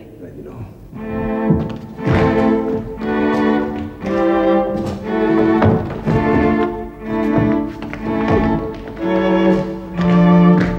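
Bowed string music: a melody of held notes changing about once a second, starting quietly in the first second and then steady.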